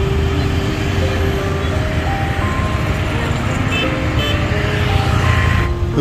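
Busy city street traffic, mostly motorbikes and cars, running steadily, with a simple tune of held notes stepping from pitch to pitch playing over it.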